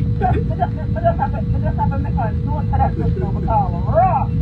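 A man's voice talking over the steady low rumble of a car's cabin, with a faint steady hum underneath.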